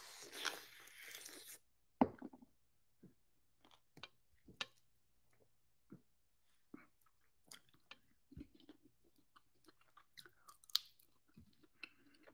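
A person biting into a piece of lime with honey and chewing it: a noisy bite in the first second and a half, then faint, scattered chewing clicks.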